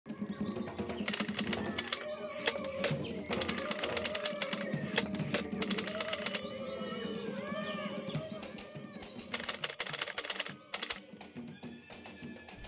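Typewriter keys clattering in several quick runs of strokes, a sound effect for title text being typed onto the screen, over soft background music.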